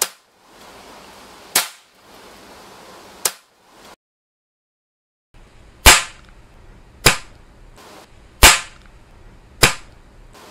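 Air Arms S410 F pre-charged pneumatic air rifle fired with its moderator fitted: a string of short, sharp shots about one to one and a half seconds apart. The last four are louder and come after a brief dead-silent gap.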